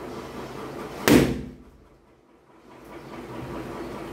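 A giant latex balloon, blown up by mouth inside a T-shirt until overinflated, bursts with a single loud bang about a second in.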